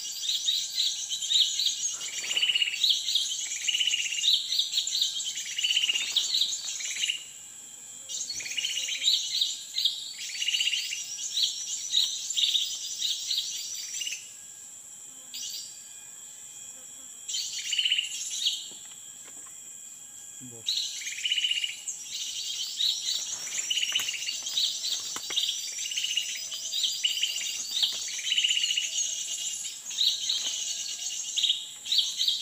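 Birds chirping in a fast, insistent series of high notes, about two a second, over a high buzzing layer. The chirping stops abruptly several times for a second or two, then resumes.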